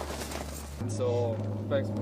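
Faint voices of people talking in short snatches, over a steady low hum that sets in about a second in.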